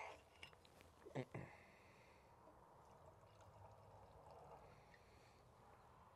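Near silence: faint outdoor ambience, with a brief soft sound at the start and another about a second in.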